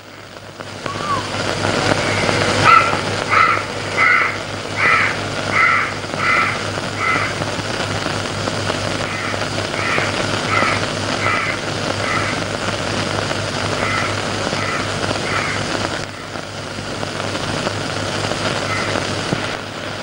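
Crows cawing in three runs of short, evenly spaced caws, a little over one a second, over a steady background hiss.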